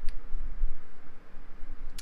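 Low bumps and rumble of handling, with a single faint click just after the start.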